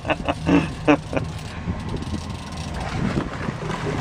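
Short bursts of laughter, then the steady running of a boat motor with wind noise on the microphone.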